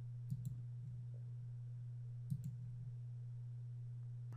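Computer mouse clicks: a quick double click about a third of a second in and another about two seconds later, over a steady low electrical hum.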